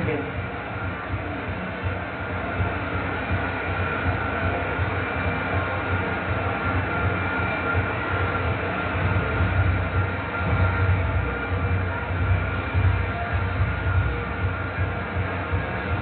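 Football stadium crowd noise: a steady din of many voices with a low rumble, swelling a little in the second half.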